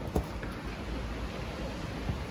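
Steady outdoor background noise, a low rumble with an even hiss, with a short click just after the start.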